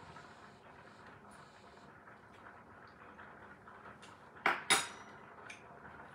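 Spoon clinking against dishware twice in quick succession, about four and a half seconds in, over quiet kitchen room tone with a few faint small taps before it.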